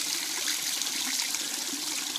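Spring water overflowing the top of a springbox and pouring through a slot in a thin steady stream, splashing down below.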